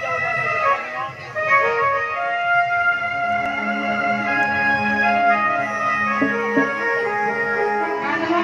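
Live Sambalpuri folk music, instrumental only, led by an electronic keyboard playing held, organ-like notes. A steady low note joins about three seconds in.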